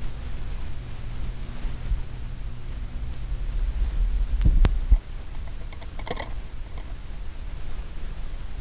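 Record changer on a console stereo after a 45 rpm single ends: the stylus rides the run-out groove with a low hum and soft thumps. About five seconds in the changer trips with a clunk and click, and the tonearm lifts and swings back to its rest with faint mechanical clicks.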